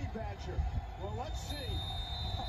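Football telecast playing from a television speaker: faint play-by-play commentary over a low rumble, with a thin, steady high tone coming in about a second in.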